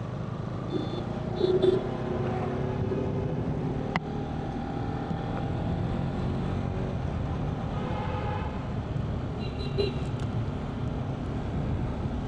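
Motorcycle engine running at road speed, with steady road and wind noise, heard from a bike-mounted camera. Two short high beeps, about a second and a half in and again near ten seconds.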